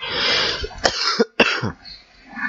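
A man coughing: three harsh coughs in quick succession, the last about a second and a half in.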